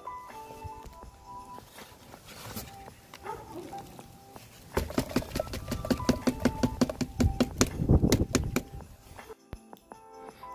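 Background music with steady held notes. From about halfway in, a quick run of knocks: a cardboard egg crate being knocked against a plastic tub to shake dubia roaches and frass off into it.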